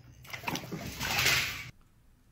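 Barbecue sauce dumped in a gush from a large bowl onto a steak on a plate, splashing; the pour builds for about a second and a half and cuts off suddenly.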